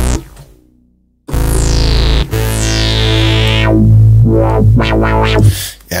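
Softube Modular software synthesizer playing a saw and a pulse-width-modulated square oscillator through a 24 dB low-pass filter. After a short break about a second in, a new note comes in with its filter envelope sweeping the brightness down, and a strong low note holds until near the end.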